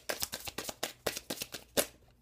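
A deck of tarot cards being shuffled by hand, overhand: quick, irregular slaps and flicks of card on card, about five or six a second, with the loudest one near the end.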